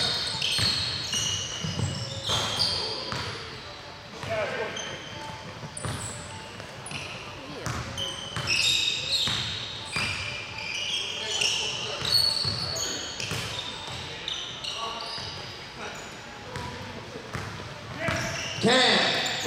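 A basketball bouncing as it is dribbled on a hardwood gym floor, with sneakers squeaking in short high-pitched chirps as players run and cut.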